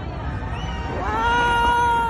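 A person's long, high-pitched cheering shout. It rises in about a second in, is held steady, then falls away, over steady low background noise.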